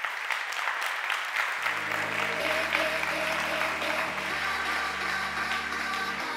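Audience applauding. Music comes in under the applause about a second and a half in, its bass note changing every two seconds or so.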